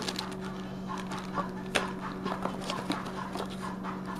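Light handling noise from a camera battery charger being taken from its plastic bag: soft crinkling and scattered small clicks, one sharper click a little under two seconds in, over a steady low hum.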